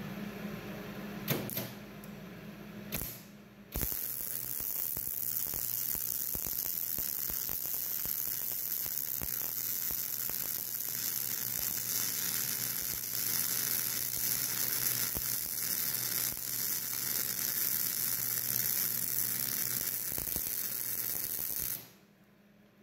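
MIG (GMAW) welding arc on steel square tubing, run with 0.035 ER70S-6 wire: a steady, even crackling sizzle that starts about four seconds in and cuts off abruptly just before the end. Before the arc strikes, there is a low steady hum with a couple of sharp clicks.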